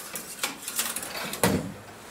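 Metal clicks and scrapes from hands and tools working on a stripped engine block, with one louder knock about one and a half seconds in.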